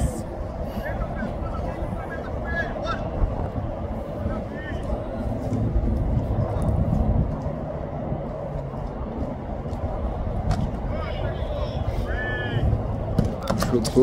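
Open-air football training ambience: a steady low rumble with distant shouts and calls from players and coaches, and a few sharp thuds of footballs being kicked.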